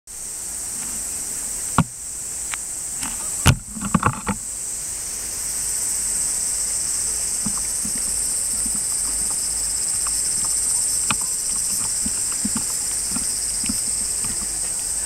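Steady, high-pitched chorus of insects singing at night, with a sharp knock about two seconds in and a short cluster of knocks around four seconds in.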